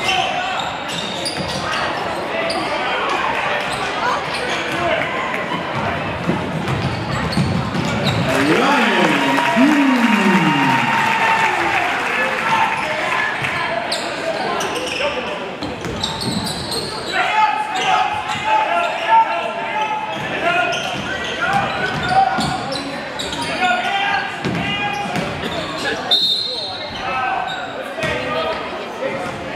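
Basketball being dribbled on a hardwood gym floor over steady crowd and bench voices. The crowd gets louder for a few seconds about eight seconds in, and a short, high referee's whistle sounds near the end as play stops.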